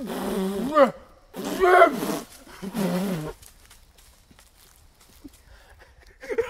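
Three loud, drawn-out animal-like calls in the first half, each under a second, the first ending in a rising wail.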